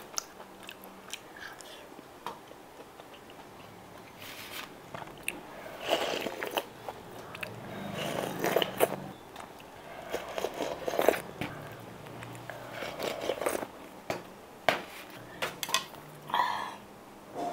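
Close-miked eating sounds: wet chewing of steamed pork offal, soft and sparse at first, then in louder clusters from about four seconds in. Around the middle the eater sips from a stainless steel bowl.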